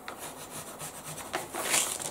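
Pencil tracing on tracing paper laid over fabric: a faint scratching and rubbing, with a louder rustle of the paper under the hands near the end.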